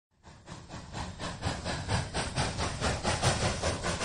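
A train running, with a quick, even beat of about five a second over a hissing rush. It fades in over the first second or so.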